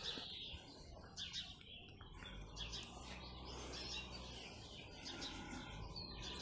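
Small songbirds chirping faintly, a scatter of short calls that comes and goes.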